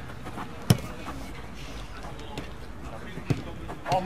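A football kicked on artificial turf: a sharp thud of the ball about a second in, and a second, lighter kick near the end, with players' voices faint in the background.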